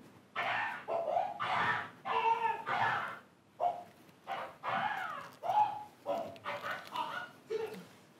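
Film clip soundtrack played over the room's speakers: a man loudly mouthing off in quick bursts of speech.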